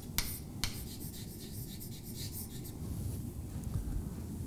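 Chalk writing on a blackboard: short scratching strokes, with a couple of sharper chalk taps in the first second.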